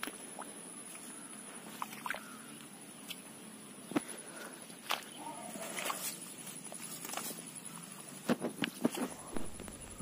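Scattered light clicks and knocks from hands working a wire-mesh pigeon cage and its netting, several coming close together near the end, over a faint high steady whine.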